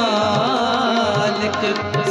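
Sikh kirtan: harmoniums holding chords under a drawn-out, wavering sung note, with tabla keeping a steady rhythm.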